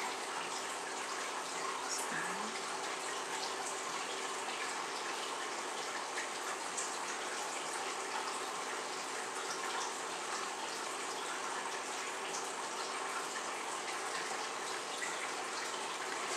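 Steady background hiss with a faint low hum underneath, unchanging throughout, with no distinct events.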